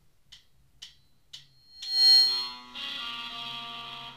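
Three evenly spaced count-in clicks from the drummer, about half a second apart, then the band comes in with a loud, high-pitched ringing hit about two seconds in, followed by distorted electric guitars holding a sustained chord.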